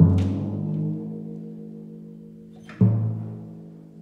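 Low timpani struck twice with felt-headed mallets, once at the start and again near three seconds in. Each stroke rings on the note A and slowly fades. This is a tuning check, with the drum's pitch played against the note A just sung.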